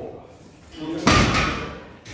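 Loaded deadlift barbell set down on the gym floor, its plates landing with one loud impact about a second in that rings and fades.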